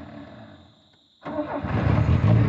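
Car engine starting about a second in, catching and settling into a steady idle.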